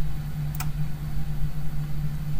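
A steady low background hum, with a single computer-mouse click about half a second in.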